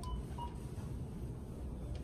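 Two short, faint electronic beeps about a third of a second apart near the start, over a steady low hum of shop background noise.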